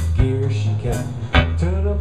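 Live blues band playing: electric guitar, bass guitar and drum kit, with sharp drum hits over steady low bass notes, and a guitar line with bending notes coming in near the end.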